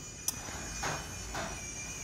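A light click about a quarter second in, then faint soft rustles: hands handling the cardboard boxes in a carton of packing peanuts.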